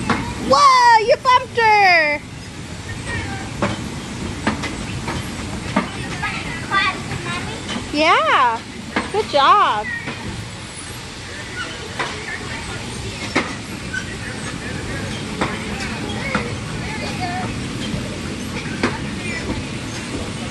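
Electric bumper cars running with a steady hum and hiss and scattered clicks and knocks. Children's high voices call out twice over it, near the start and about eight seconds in.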